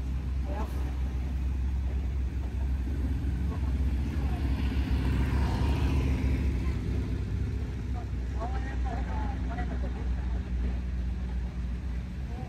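Low, steady rumble of slow-moving vehicles at an intersection, swelling about four to six seconds in as one passes close, with faint voices of people nearby.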